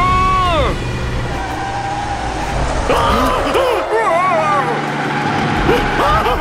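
Cartoon sound effect of a vehicle braking hard on a wet road: a low rumble under a steady high screech for about two seconds. A loud shout opens it, and frightened cries follow about three seconds in.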